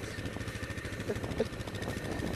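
Yamaha Grizzly 660 ATV's single-cylinder four-stroke engine idling steadily, a fast even low pulse.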